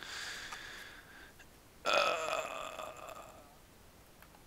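A young man's voice: a faint breath, then a drawn-out hesitant "uh" about two seconds in that fades out over about a second.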